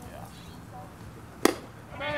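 A pitched baseball hitting the catcher's mitt: one sharp pop about a second and a half in. Faint voices sit in the background.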